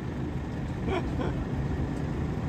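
Steady low engine rumble of farm machinery running in the background, with a couple of faint scrapes about a second in.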